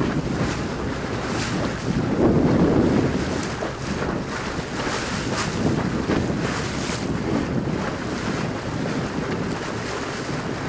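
Wind buffeting the microphone over the wash of choppy water around a boat, rising and falling in irregular gusts.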